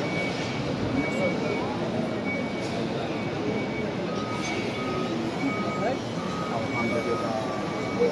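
A large crowd of pilgrims walking closely together: a steady hubbub of many overlapping voices. A faint series of short electronic beeps repeats through it.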